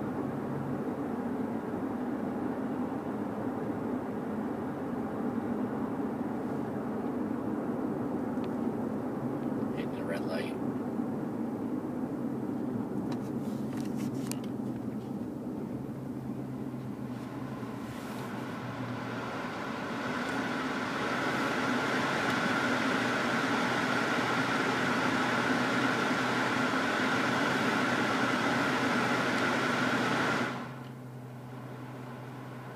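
Dodge Magnum R/T's 5.7-litre HEMI V8 through a Flowmaster American Thunder exhaust, heard from inside the cabin as a steady low hum while cruising at about 1500 rpm. It grows louder about two-thirds of the way through, with more road and wind noise.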